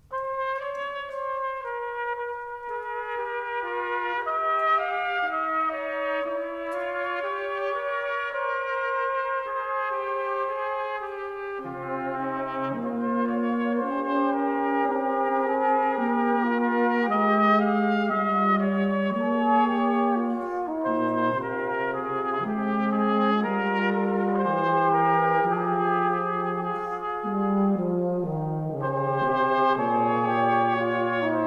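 Brass band playing. A new passage begins after a brief pause, with only the upper brass carrying the melody; the low brass come in about twelve seconds in.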